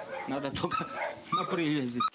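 Dogs barking in the background, with a man talking over them.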